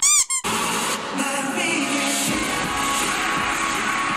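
A brief, loud electronic beep lasting about a third of a second at the very start, a test-pattern tone effect. It is followed by K-pop music with singing.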